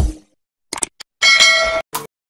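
Music cuts off, and after a pause come a couple of brief clicks and then a short bell-like metallic ding, ringing about half a second, with one more short hit at the very end.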